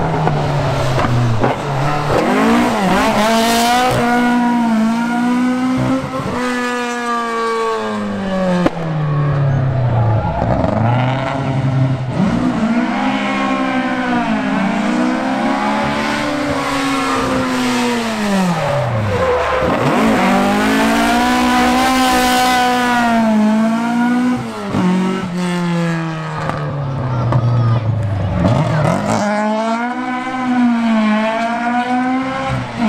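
Rally car engines at full throttle on a tarmac street stage, revving hard up through the gears with a sharp drop at each shift. The pitch dives low several times as cars brake, change down and pass.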